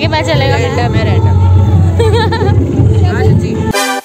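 Loud live concert music over a sound system, with heavy steady bass and wavering sung or shouted voices mixed with crowd noise. About three-quarters of a second before the end it cuts off suddenly, replaced by a quieter, cleaner keyboard music track.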